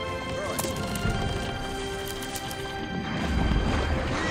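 Film soundtrack music with sustained tones, under scattered knocks and clatter, and a deep low surge near the end that is the loudest sound.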